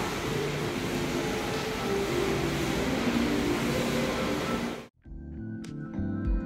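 Steady hiss and hum of an elevator lobby's ambience, cut off abruptly about five seconds in; gentle plucked-string background music then begins.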